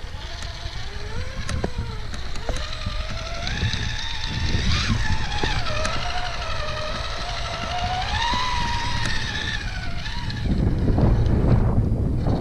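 An RC rock buggy's brushed Crawlmaster Pro 550 10T motor and drivetrain whining under load as it climbs steep rock, the pitch rising and falling with the throttle, with occasional sharp clicks. Near the end the whine stops and wind buffets the microphone.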